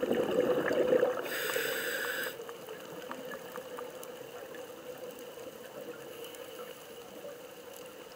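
Scuba diver's breathing underwater: a loud gurgle of exhaled bubbles at the start, then a short hissing inhale through the regulator about a second and a half in, followed by steady underwater background with faint scattered clicks.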